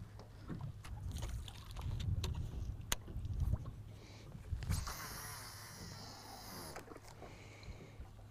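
Casting reel's spool whirring for about two seconds as line pays out on a cast, after a few light clicks and handling knocks over a low wind rumble.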